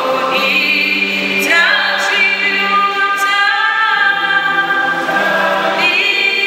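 Choir singing a slow hymn in long held chords that change every second or so.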